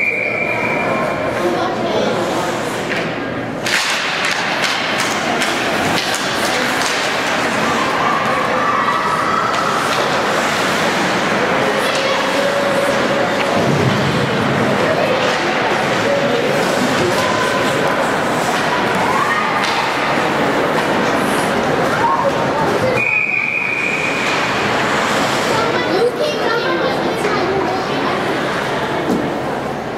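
Ice hockey game sound in an indoor rink: stick and puck clacks and knocks against the boards over indistinct voices from players and crowd. A short steady high tone sounds at the very start and again about 23 seconds in.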